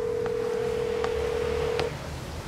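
Telephone ringback tone: one steady tone held for about two seconds and then stopping, the ringing signal of a call that has not yet been answered. Shoes click on a tiled floor three times, about three-quarters of a second apart.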